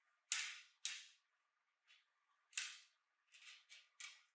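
Thin metal wire being worked by hand: a series of short, sharp scraping strokes, each dying away within half a second. Three strong ones come in the first three seconds, then quicker, fainter ones near the end.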